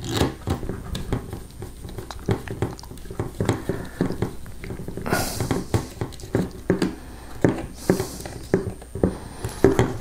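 Small screw being turned by hand with a long screwdriver into a 3D-printer extruder and fan mount: a run of irregular small clicks and scrapes of metal on plastic, with two short hisses around the middle and near the end.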